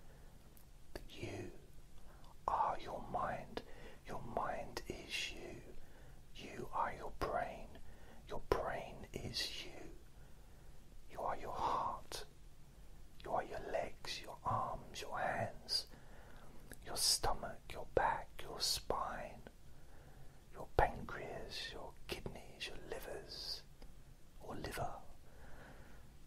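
A man whispering close to the microphone in short phrases with brief pauses, the s-sounds coming through as sharp hisses.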